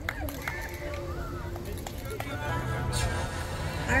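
Faint background talk from people around, with no close voice, at a low steady level.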